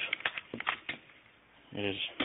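A quick series of clicks and rattles in the first second as the magazine is released and pulled out of a Saiga AK-style rifle.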